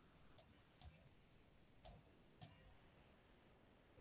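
Computer mouse clicking four times, short sharp clicks unevenly spaced, two close together in the first second and two more around two seconds in.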